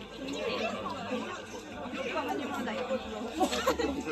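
Crowd chatter: many people talking at once around busy stalls, with no single voice standing out. A couple of short sharp knocks come about three and a half seconds in.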